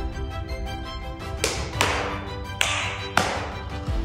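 Background music with steady held notes, cut through by four sharp, crash-like hits with ringing tails, starting about a second and a half in.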